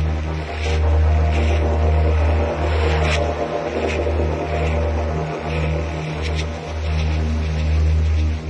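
Electronic music intro: a loud, deep bass drone that cuts out briefly several times, with sustained synth tones above it and faint airy swishes.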